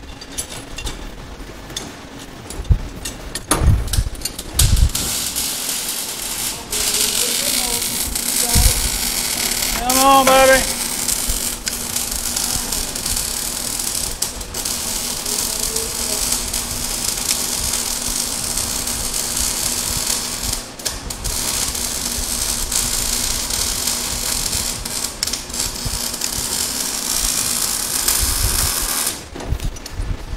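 MIG (wire-feed) welder arc crackling and sizzling steadily as it welds the transmission-mount bracing to the car's frame. The welding stops about a second before the end.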